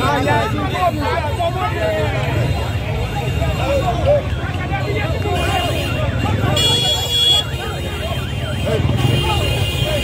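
Street crowd of demonstrators talking and calling out over the low steady running of motorbike engines. A high, steady horn-like tone sounds briefly about seven seconds in.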